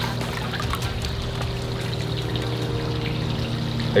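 Water trickling and lapping in a fish pool, over a steady low hum.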